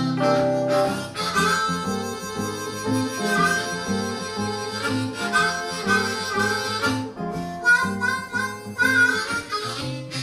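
Blues harmonica solo, played cupped into a microphone, over a rhythmic archtop guitar accompaniment.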